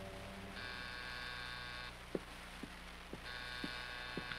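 Radio-drama sound effect of an electric door buzzer sounding twice, each ring a little over a second long, with footsteps walking to the door between the rings at about two steps a second. A low steady hum from the old transcription recording runs underneath.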